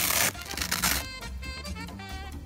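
Velcro strap on a scooter leg cover ripped open in two rasping pulls, the first at the very start and the second a moment later, over background music.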